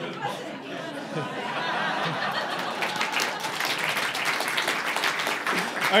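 Audience applauding in a hall, with laughter and chatter mixed in; the clapping builds about a second in and dies away near the end.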